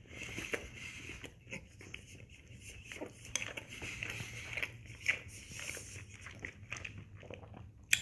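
A person chewing a mouthful of tender chuck pot roast close to the microphone: a string of small, irregular mouth clicks, with one sharper click just before the end.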